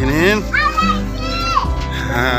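Children's voices calling and shouting, with high rising and falling calls, over steady background music.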